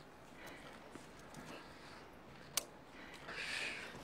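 A pistol's hammer clicks once, sharply, a little over halfway through, misfiring on a dry snap instead of a shot, over quiet outdoor ambience. A short rustle follows near the end.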